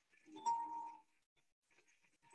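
A small bell or chime struck once about half a second in, giving a bright ding that dies away within about half a second, over a faint low hum.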